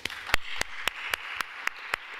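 Audience applause, with one person's claps standing out, loud and even at about four a second, over the general clapping.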